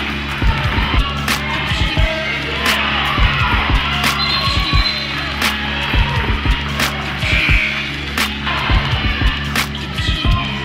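Basketball game noise in a gym: crowd and player chatter with sneakers and the ball knocking on the hardwood floor, over a steady low hum. A sharp click recurs about every second and a half.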